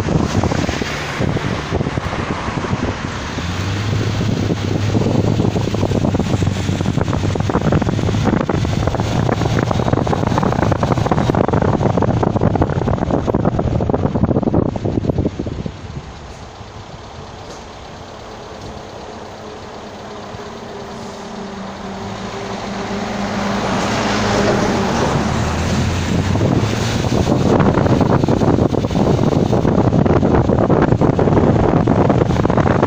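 Road and wind noise with engine hum from a moving vehicle, recorded from on board. It drops markedly about half-way through as the vehicle slows, then builds back up over the last several seconds as it picks up speed.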